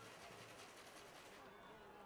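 Near silence: faint ambience of a football stadium with distant, indistinct voices.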